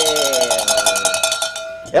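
A brass cowbell shaken rapidly by hand, its clapper rattling fast over a steady ringing tone, stopping shortly before the end.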